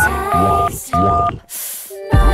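Telephone keypad tones dialing 9-1-1 in a break where the song's beat drops out: the end of the "9" tone, then two "1" tones. A short burst of hiss follows near the end.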